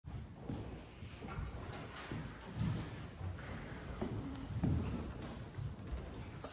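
Slow footsteps of a person walking across a wooden floor, a series of uneven low thuds with light clicks about one to two a second.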